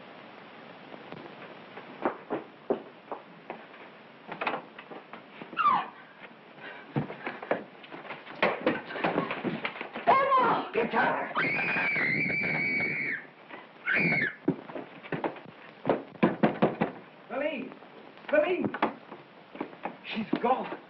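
A struggle: scattered knocks and thumps with short cries, then about halfway through a woman screams, one high held scream of over a second, followed by another short cry.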